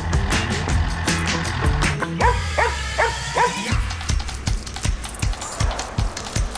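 Background music with a steady beat. About two seconds in, a dog barks in a quick run of about five barks, lasting roughly a second and a half.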